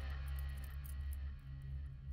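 Quiet film background music: a low, steady drone with faint guitar.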